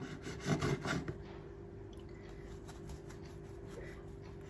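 Long knife sawing through a loaf of banana bread on a wooden cutting board: a quick run of scraping strokes in about the first second, then only a faint steady hum.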